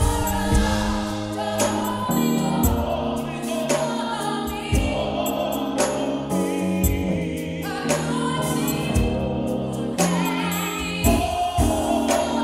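Hammond organ playing sustained gospel chords under choir singing, with regular sharp percussive hits in the band.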